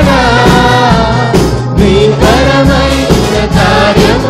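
A live church worship band playing a Telugu praise song: a group of singers in unison over keyboards, guitar and a steady drum beat of about two strokes a second.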